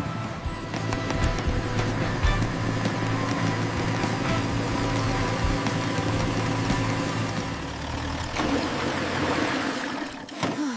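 Cartoon vehicle engine and driving sound effects mixed with background music, running steadily, with a shift in the mix near the end.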